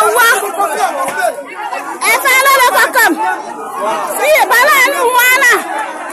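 A crowd of people talking loudly over one another, several voices overlapping at once.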